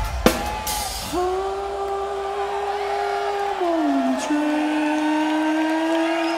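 Four-piece rock band with guitar, bass, keyboards and drums playing live. There is a drum hit with a cymbal ringing off just after the start, then a long held note that slides down a little past halfway and settles on a lower held note.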